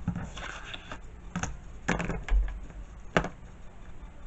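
Hands handling cardstock and setting a clear plastic ruler down on a cutting mat: a soft brushing rustle, then a few sharp taps and clicks, the sharpest about three seconds in.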